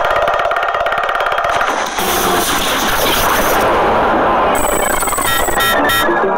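Soundtrack of an animated cartoon: a loud, fast rattle of clicks for about two seconds, then a dense wash of noise with electronic music tones stepping in near the end.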